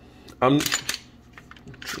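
Sharp clicks of a Glock pistol being handled and cleared, with one click about two-thirds of a second in and a louder one near the end.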